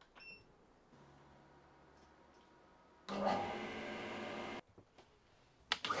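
Workshop machines being switched on. About three seconds in, an electric motor starts, runs steadily for about a second and a half and stops abruptly. Near the end, a wood-dust extractor starts up with a loud rushing whine.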